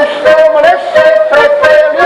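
Heligónka, a Slovak diatonic button accordion, playing a folk tune with a steady beat of chords about three times a second, and a voice singing along over it with sliding pitches.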